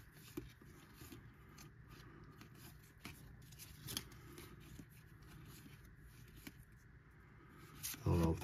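Very faint handling of a stack of baseball cards, the cards slid one by one through the hand. Soft, irregular ticks and rustles of card stock come about once a second.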